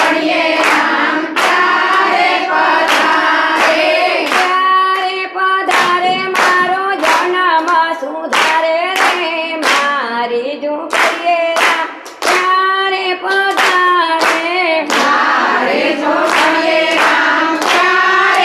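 A group of women singing a Gujarati bhajan together, keeping time with steady hand clapping a little under two claps a second.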